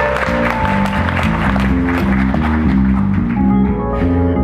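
Live jazz from an electric bass guitar and a drum kit: the bass plays a run of short, quickly changing low notes while the cymbals and drums keep time.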